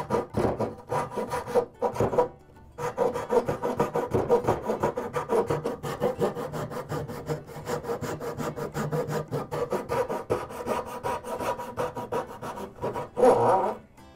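Lynx brass-backed gent's saw cutting a dovetail by hand in a hardwood board: a run of quick, even, rasping push strokes, broken by a brief pause about two seconds in before the sawing picks up again.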